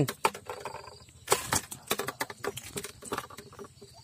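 Irregular rustling, slaps and clicks as a freshly hooked lembat catfish thrashes on the line and in the hand among pond weeds and grass.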